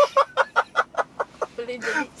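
Hearty laughter in a quick run of short 'ha' pulses, about five a second, easing into a longer drawn-out laugh near the end.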